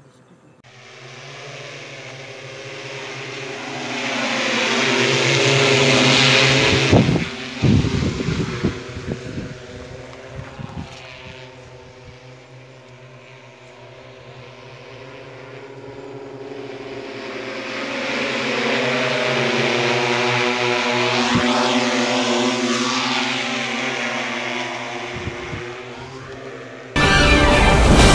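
Multirotor agricultural spray drone flying over twice, its rotor whine swelling to a peak about six seconds in and again about twenty seconds in, bending in pitch as it passes. A spell of buffeting noise follows just after the first pass.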